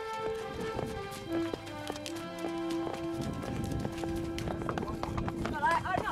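Background music with held notes over the clip-clop of walking horses' hooves; the music fades out about four and a half seconds in, leaving the hoofbeats and voices.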